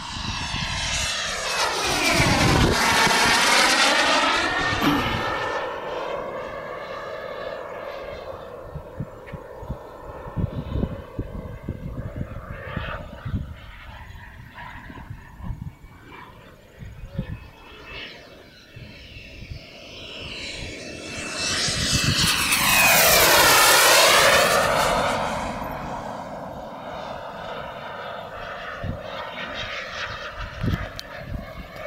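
T-45 Goshawk jet making two low passes. Each time, the jet noise swells to a loud peak with a sweeping fall in pitch as it goes by, about two seconds in and again past twenty seconds, and it runs on more quietly in between.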